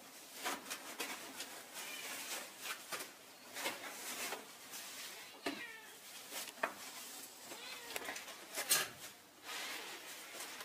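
A cat meowing several times, short wavering calls, over the rustle and slide of fabric webbing tape being pulled through a woven chair seat.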